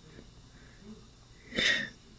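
Quiet room tone, then a short, sharp breath in close to the microphone near the end.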